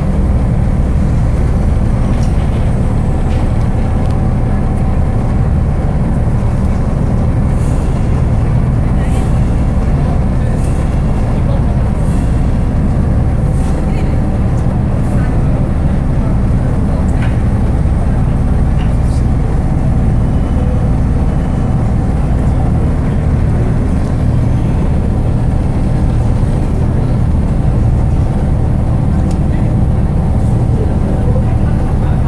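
River sightseeing boat's engine running steadily, a constant low drone heard from on board.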